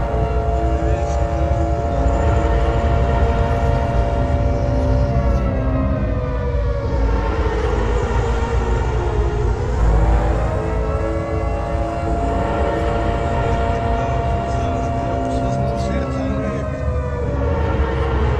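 A warning siren wailing: it holds one pitch, sinks low about nine seconds in, climbs back, and starts falling again near the end, over a steady low rumble.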